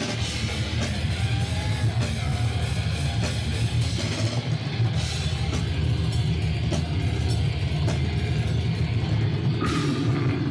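Brutal death metal band playing live: heavily distorted, down-tuned guitars and bass over a fast drum kit, loud and steady with the weight of the sound in the low end.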